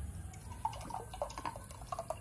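Thick banana atole pouring from a glass pitcher into a glass mug, a soft liquid fill sound.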